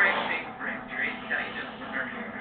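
Indistinct speech from a P90X workout DVD playing on a television, with the instructor talking through the exercise.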